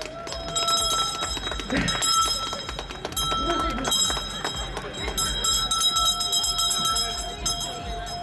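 Faint distant voices over a low rumble, with steady high tones that come and go and a longer lower tone in the second half.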